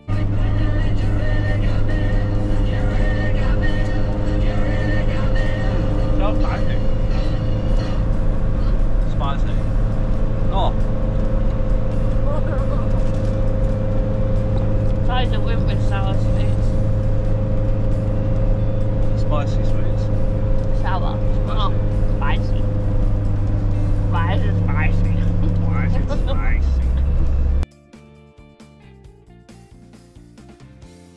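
Campervan driving noise heard inside the cab: a loud, steady low engine and road drone with a steady hum over it and voices talking underneath. The drone's note shifts shortly before the end and then cuts off suddenly.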